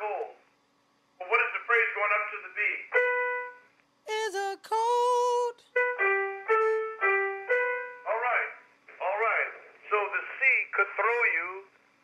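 A male voice singing a vocal exercise on the word "cold": short sung syllables, a held note with vibrato about four seconds in, then a run of steady notes stepping down in pitch, followed by more short phrases.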